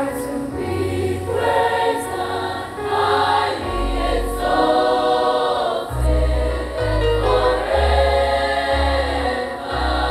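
A girls' choir singing a church hymn, with deep, sustained bass notes underneath that change every half-second or so.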